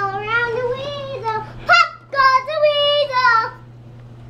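A toddler singing aloud in long, high held notes that bend in pitch, in two phrases with a short break about two seconds in.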